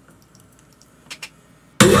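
Quiet room with two faint clicks about a second in, then loud rock music cuts in suddenly near the end.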